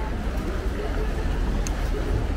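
Outdoor ambience at a canal footbridge: a steady low rumble with faint voices of people nearby.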